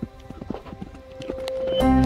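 Hoofbeats of a young Spanish Barb horse moving loose on soft dirt, a run of irregular dull thuds, under background music that swells much louder near the end.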